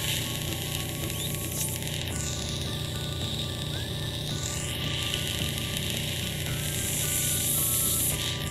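Ear suction hissing steadily, drawing fluid out of the middle ear through a fresh myringotomy incision in the eardrum. Its pitch sweeps down and back up about two to five seconds in. Background music with held notes plays under it.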